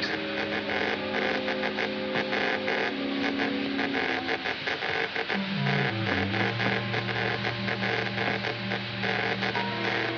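Dramatic film underscore of sustained low chords. About halfway through, the bass steps downward and settles on a long held low note. It plays over the steady crackle and hiss of an old optical soundtrack.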